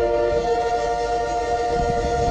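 Concert band of woodwinds and brass holding one sustained chord, several notes ringing steadily together.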